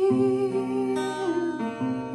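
Acoustic guitar strumming a chord that rings on, with a new chord near the end, under a voice holding one long note that fades out partway through.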